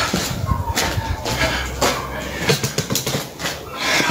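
Handling noise from a phone camera being carried and repositioned: irregular knocks, clicks and rustling, with a low rumble in the middle.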